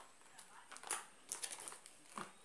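Faint rustling and a few short crackles of cardboard packaging as boxed cosmetics are handled and lifted out of a cardboard shipping box.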